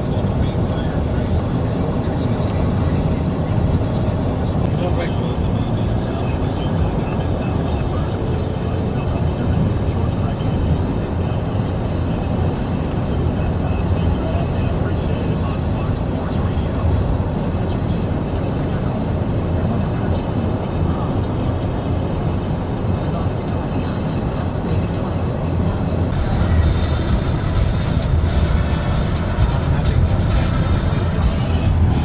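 Steady road and engine rumble inside a car cruising on a highway, with the car radio playing music and voices. Near the end a hiss of rushing air grows louder.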